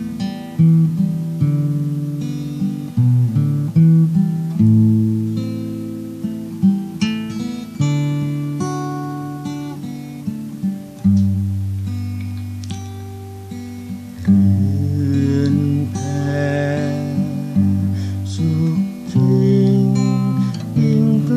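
Solo acoustic guitar playing a slow instrumental passage of picked chords over bass notes, each attack ringing out and fading before the next.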